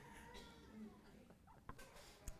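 Near silence: room tone, with faint laughter in the first second and a few small clicks.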